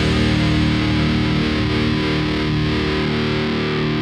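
Heavy metal song: a distorted electric guitar chord with effects, held and slowly fading, with no drum hits.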